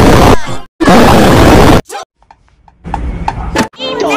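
Heavily distorted, clipped 'earrape' meme audio: a blown-out, voice-like sound at full loudness in two blasts, the second about a second long. It then drops to near silence with faint ticks, and a quieter stretch follows near the end.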